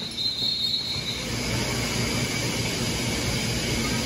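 Steady mechanical rumble with a low hum; a high thin tone fades out about a second in.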